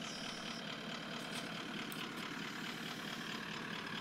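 Vehicle engine idling steadily at low level, a constant low hum, with a few faint light ticks over it.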